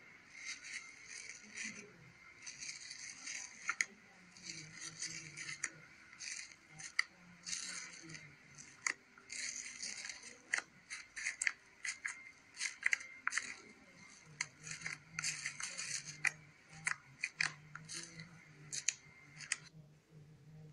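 Bubbly slime being poked and stretched by fingers in a plastic tub, its air bubbles popping in a rapid, irregular crackle of small clicks. The crackling stops shortly before the end.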